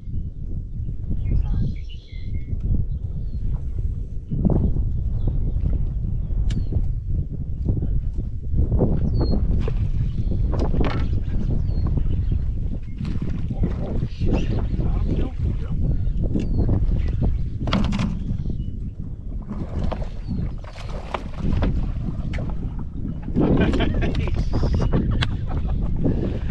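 Wind buffeting the camera microphone on open water: a heavy, gusty rumble that swells and eases throughout. Faint short high chirps recur every second or two.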